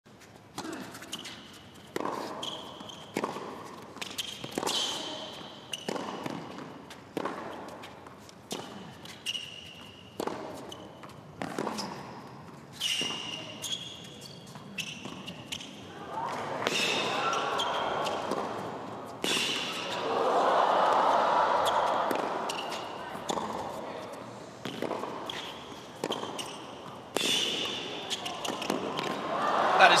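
Tennis ball struck back and forth by rackets in a long rally, about one shot a second, some two dozen strokes. A crowd murmur swells in the middle of the rally, and the crowd starts applauding near the end as the point finishes.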